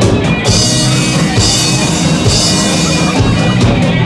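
Live rock band playing an instrumental passage: electric guitar, bass guitar and drum kit, with bright cymbal crashes about once a second in the first half and a sustained guitar tone held underneath.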